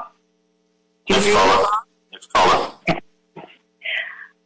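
A person clearing their throat and coughing in several short bursts, heard over a conference-call line.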